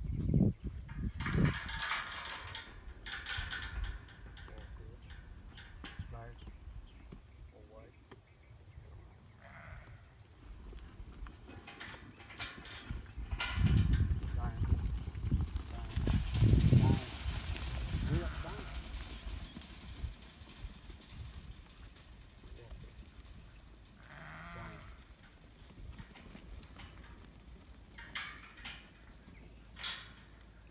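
Dorper sheep bleating now and then, with a loud rush of hooves on dirt in the middle as the flock runs out of a pen. A few knocks and clatters come in the first few seconds.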